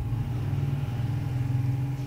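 A steady, low machine hum with a few unchanging tones and no break or change.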